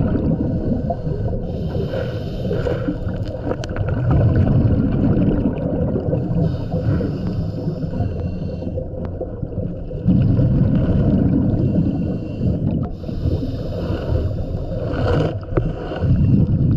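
Scuba regulator breathing underwater: a hissing inhale through the regulator, then a rumbling gush of exhaled bubbles, repeating in a slow cycle of about six seconds.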